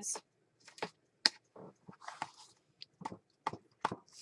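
Clear acrylic stamping block and photopolymer stamps being handled and tapped onto an ink pad: a series of light clicks and taps, the sharpest about a second in.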